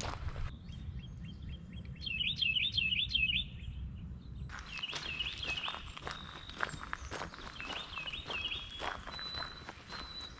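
Footsteps of a person walking along a dirt trail, with a low rumble underneath. A songbird sings a short, rapid phrase of looping high notes three times.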